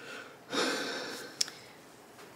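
A person's breath: a sharp exhale or sigh through the nose about half a second in, fading away, then a single short click.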